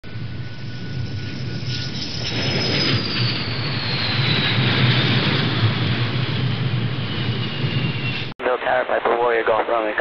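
Jet aircraft engine noise: a steady low rumble under a high whine that slowly falls in pitch, ending abruptly at a cut about eight seconds in. A man's voice then speaks over air traffic control radio.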